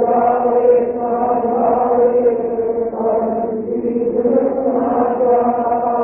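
Devotional chanting: a voice holding long, sustained notes with slow swells.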